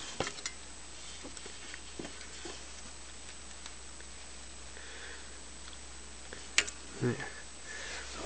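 Faint hand-handling noises as a rubber seal is worked around the starter motor's ring gear and end cap on an ATV engine: a few light clicks and taps, then one sharper click about six and a half seconds in. A low steady hum runs underneath.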